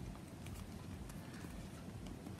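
Faint scattered clicks and rustling of a crochet hook pulling macramé cord through the holes of a bag base.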